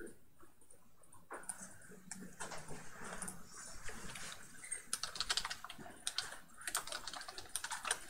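Typing on a computer keyboard: quiet, irregular keystrokes that come thicker in the second half.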